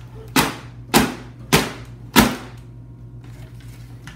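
Four sharp hits about half a second apart, a fist punching through the paper sheet stretched over a punch box, each hit followed by a brief papery rustle.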